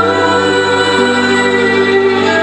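Live Christian worship music: a choir of mixed voices holding long sustained notes with band accompaniment, the chord shifting about a second in.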